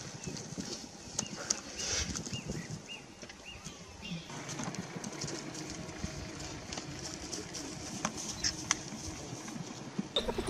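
A run of short, high chirping animal calls, about two a second for a few seconds early on, over a low rumbling and rustling background with scattered sharp clicks.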